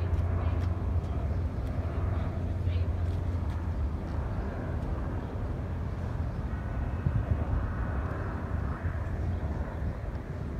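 Aircraft in flight: a steady low engine drone heard throughout, with faint voices over it.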